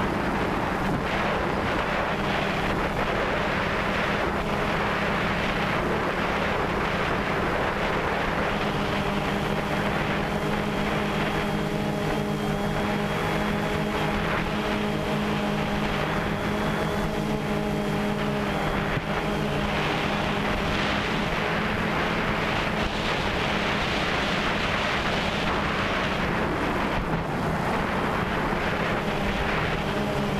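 DJI Phantom 2 quadcopter's motors and propellers buzzing steadily in flight, heard from the camera on board, mixed with wind on the microphone. The buzz settles into clearer steady tones through the middle stretch.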